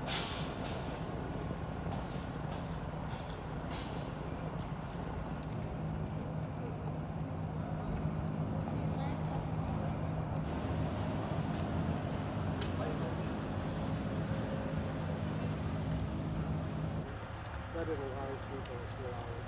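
Street sound dominated by a large vehicle's engine idling, a steady low hum over a wash of hiss and street noise, with faint voices; the hum drops away near the end.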